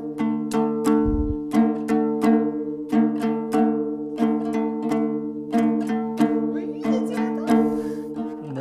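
Nogai dombra, a two-string plucked lute with frets tied from fishing line, strummed in a steady rhythm of about three strokes a second, both strings ringing on under each stroke. A soft low thump about a second in.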